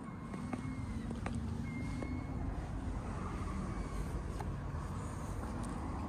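Outdoor background noise in a car park: a steady low rumble, with a few faint clicks.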